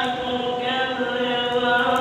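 A man reciting the Qur'an in the melodic chanted style, drawing out long held notes that slowly glide in pitch.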